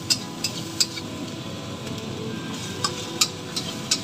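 Metal ladle clinking and scraping against a wok as rice is stir-fried, with sharp irregular clicks in clusters near the start and near the end, over a steady sizzle of frying.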